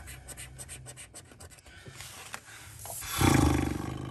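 A coin scratching the latex coating off a scratchcard in quick, short strokes, then a louder rushing sound near the end.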